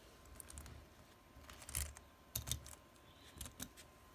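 Faint handling noise: soft clicks and rustles in three short clusters in the second half.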